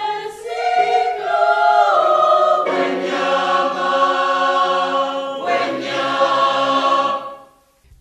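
Mixed-voice polyphonic choir of men and women singing sustained chords in three phrases, with short breaks between them. The last chord is released shortly before the end.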